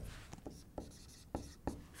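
Dry-erase marker writing on a whiteboard: faint scratchy strokes with a few light taps of the marker tip.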